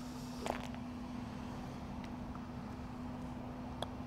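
Quiet outdoor ambience with a steady low hum, then a single sharp click just before the end: a putter striking a golf ball on the green.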